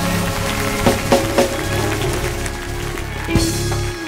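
Instrumental ending of a gospel hymn: held chords with a few sharp hits, the music dropping away near the end.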